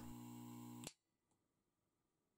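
Near silence: a faint steady electrical hum that cuts off about a second in, leaving dead silence.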